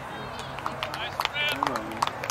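Sideline voices at a youth soccer game: spectators and players talking and calling out, with one higher-pitched call about halfway through. Scattered short sharp clicks run through it.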